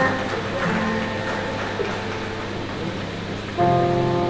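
A small ensemble of violins, saxophone and brass starting to play, holding chords, with a louder, fuller chord coming in near the end.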